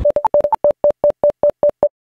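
A quick run of about a dozen short electronic beeps, mostly at one mid pitch with a few higher ones in the first half second, played as a channel logo sting; it cuts off just before the end.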